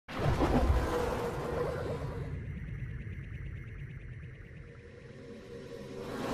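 Logo intro sting of music and sound effect: it starts suddenly and loud, fades away over several seconds, then swells again at the very end.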